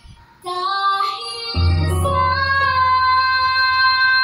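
A young girl singing a show tune into a microphone with musical accompaniment, her voice coming in about half a second in after a brief pause. A low accompaniment note enters around the middle, and she holds one long steady note through the second half.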